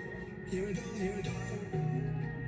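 K-pop song playing, a male voice singing over the backing track.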